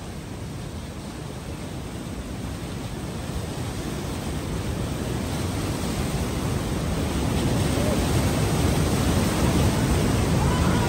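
Whitewater river rapids rushing over boulders: a steady roar of water that grows gradually louder.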